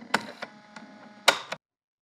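A few sharp clicks over a faint, fading background, with one louder click about a second and a half in; then the sound cuts out to silence.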